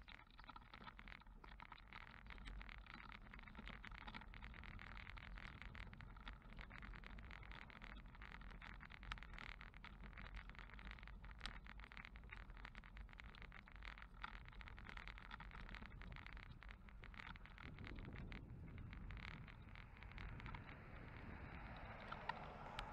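Faint, steady noise of travel along a paved path, made of many fine ticks over a low rumble. Near the end, road traffic noise rises as a car passes.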